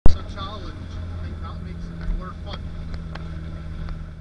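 Volvo drift car engine idling with a steady low hum, heard from inside the cabin. A single sharp knock comes at the very start.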